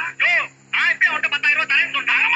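Speech: a man talking in film dialogue.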